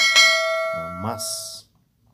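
Notification-bell 'ding' sound effect of a subscribe-button animation: one bright chime of several ringing tones struck at once and fading out after about a second and a half, with a short high hiss about a second in.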